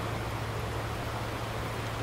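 Steady outdoor background hiss with a faint low hum and no distinct event.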